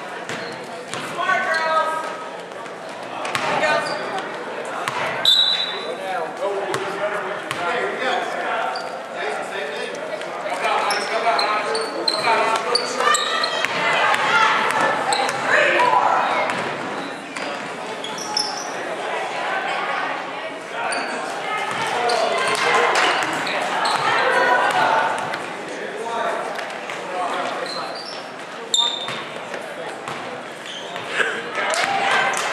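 Sounds of a basketball game on a hardwood gym floor: a ball bouncing, brief sneaker squeaks, and players and spectators calling out.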